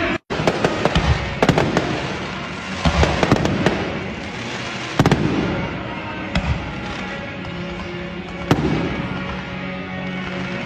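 Fireworks display: a string of sharp bangs and crackling from aerial shells, with the loudest reports about a second in, around three seconds, at five seconds and near eight and a half seconds. Music plays steadily underneath.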